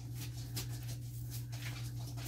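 Fingers picking at the end of a strip of double-sided tape, trying to lift its backing: a few faint scratches and rustles over a steady low hum.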